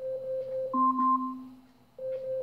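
Amazon Echo smart speaker's timer alarm going off. A steady electronic tone changes after a moment to two tones together, one lower and one higher, which pulse briefly and fade out. The pattern starts again at the very end.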